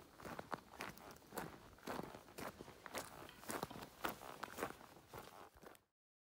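Footsteps on a dry, leaf-strewn dirt forest track, walking at a steady pace of about two steps a second, cutting off suddenly near the end.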